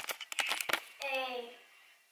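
A quick run of sharp clicks and knocks from a hand handling the camera, then a child's voice for about half a second.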